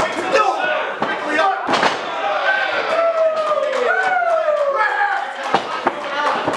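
Pro wrestling ring impacts: sharp slams and thuds on the canvas, the loudest nearly two seconds in and two more near the end, under drawn-out shouting voices.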